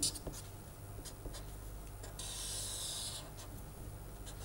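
Felt-tip marker writing on paper: a few small taps and short strokes, then one longer scratching stroke about two seconds in, lasting about a second.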